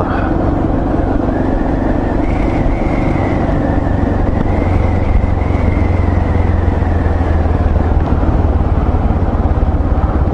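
Yamaha MT-03's 660 cc single-cylinder engine running steadily as the motorcycle cruises along a street, heard from the rider's seat.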